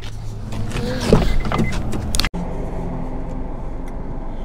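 Car driving, heard from inside the cabin: a steady low hum of engine and road noise that begins abruptly about two seconds in. Before it come a few short knocks and sounds by the car.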